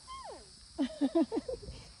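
A high squeal falling in pitch, then a quick run of short laughs about a second in.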